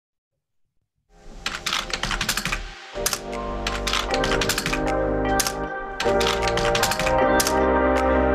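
Typewriter key clicks in a quick, uneven run over a soundtrack of sustained music. Both start suddenly about a second in, and the music swells louder.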